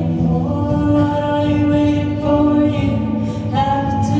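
Live band music with several voices singing long held notes in harmony, the chord shifting every second or so.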